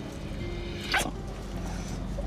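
Soft background music, with one short sharp smack about a second in as a kiss breaks off.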